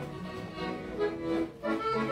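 Piano accordion playing a hymn on its own between sung lines, sustained melody notes over chords, with a short dip in loudness about one and a half seconds in.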